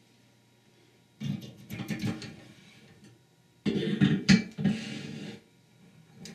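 Steel transmission parts being handled: the direct clutch drum set down on a transmission foot press and the press's metal fittings moved over it, clinking and scraping. Two bursts of these noises, the first about a second in and a louder one past the halfway point.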